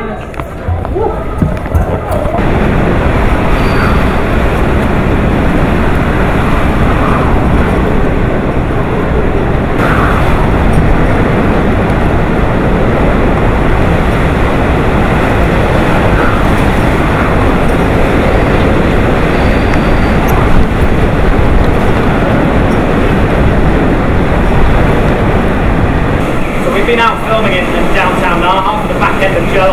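Typhoon-force wind and rain battering the microphone: a loud, dense, steady rush that swells a little with the gusts. It comes in about two seconds in, after a quieter moment indoors.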